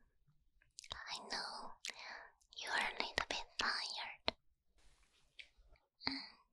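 Close-up mouth sounds into a binaural ear microphone: breathy, whisper-like noise broken by many sharp wet clicks, starting about a second in and fading out after about four and a half seconds.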